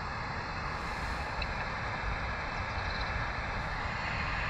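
Wind rumbling on the microphone: a steady, fluttering low rumble with an even hiss above it.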